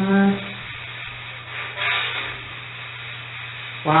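A short voiced sound at the start and a brief breathy noise about two seconds in, over the steady hum and hiss of a low-fidelity recording. It ends with a spoken "wow".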